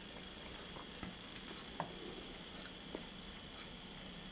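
N scale model train, a small diesel locomotive pulling cabooses, rolling past on the track: a faint steady hiss with a few light clicks from the wheels.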